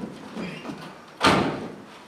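A stage-set door shut with a single loud bang about a second in, followed by a short ring-out.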